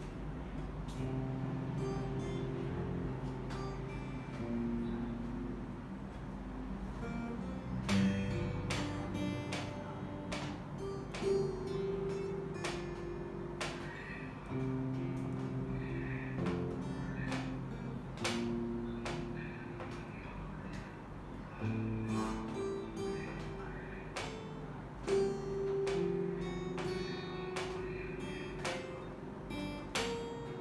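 Solo acoustic guitar played with the fingers: a picked melody over low bass notes, each note ringing on after it is plucked.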